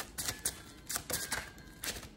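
Tarot cards being handled on a table: a quick, irregular run of crisp card snaps and rustles.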